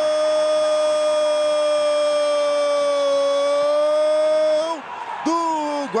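Brazilian TV football commentator's drawn-out goal cry, "Gooool", held on one steady note for nearly five seconds before breaking off near the end into shorter shouts.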